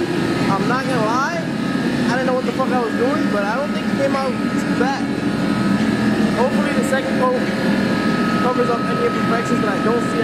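Sung vocals in repeated rising-and-falling glides, over a steady low hum.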